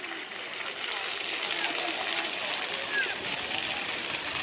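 Ground-level fountain jets spraying up and water splashing back onto wet stone paving, a steady hiss.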